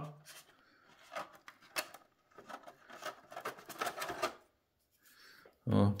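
Scattered light clicks and rubbing of 3D-printed plastic parts being handled, as a printed former is worked into the rim of a printed fuselage shell.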